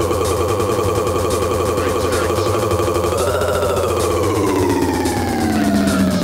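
Electronic dance music from a DJ set: a held synth note over a steady bass, which bends up about halfway through and then slides slowly down in pitch, siren-like.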